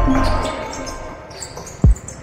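Background music fading out within the first half second, then a basketball bouncing once on the gym floor near the end, a single short, low thud.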